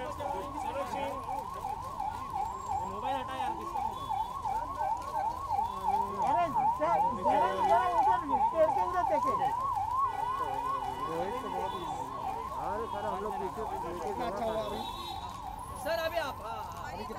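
Electronic siren in a fast yelp pattern: a rising sweep that repeats about three times a second, steady throughout, over the murmur of crowd voices.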